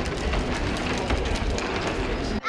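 Outdoor street ambience: a steady, noisy rumble with scattered faint clicks and no clear voices.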